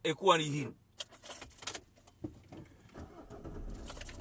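Car keys rattling for about a second, then the car's engine starts and settles into a low, steady idle.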